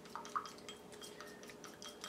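Faint stirring of a thin glue-and-coffee mixture in a small metal shot glass, with a few light clinks and small liquid sounds.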